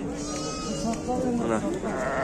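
A sheep bleating: one drawn-out call in about the first second, with a man's voice near the end.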